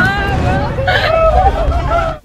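Loud sound effect for an animated logo intro: several voices shouting at once over a heavy, deep bass rumble.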